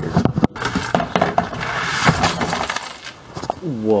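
Small chopped pieces of scrap copper poured from a plastic bucket into a plastic tub: a rapid clatter and clinking of metal bits that dies down after about three seconds.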